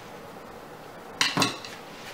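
A metal tool clattering onto a hard surface: two quick sharp knocks with a brief ring, just over a second in.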